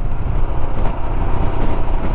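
Motorcycle on the move at road speed: steady wind rush on the helmet microphone over the engine's even running.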